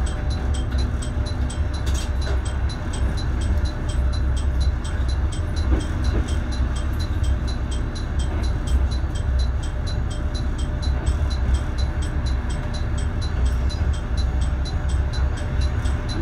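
Nagaragawa Railway diesel railcar rolling slowly into a station, heard from inside the car: a steady low rumble of the diesel engine and running gear.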